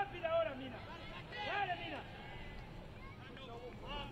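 Distant shouting voices at a soccer match, two short calls about a second and a half apart, over faint stadium ambience.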